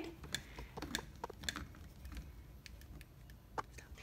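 Faint, irregular light clicks of a hand screwdriver tightening the mounting screw of a doorknob, with a sharper click near the end.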